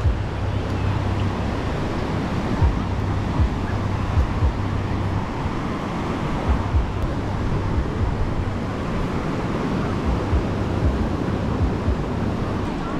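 Surf washing onto a sandy beach as a steady rushing noise, with wind buffeting the microphone in irregular low thumps.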